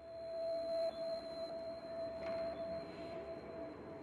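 Background music: a single sustained electronic tone held steady, the quiet opening of a track before its beat comes in.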